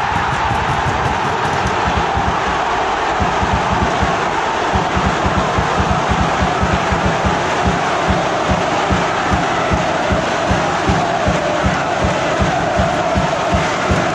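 Football stadium crowd cheering a home goal, one dense wall of voices. A steady low beat comes in underneath about four seconds in.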